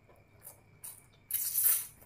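Crisp crunching of a fried pork rind being bitten and chewed close to the microphone: a couple of small crackles, then one loud crunch about a second and a half in.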